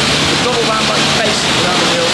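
Steady hiss of a pressure-washer jet rinsing the car in a wash bay, with a low steady hum underneath that stops just over a second in.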